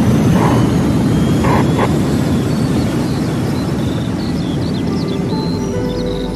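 A loud rushing, rumbling roar of a rocket-launch engine sound effect, slowly fading away toward the end, with a faint brief voice about one and a half seconds in.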